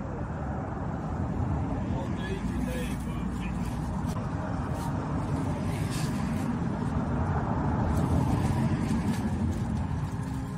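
Road traffic noise: a low rumble that swells toward the end, with scattered clicks and knocks over it.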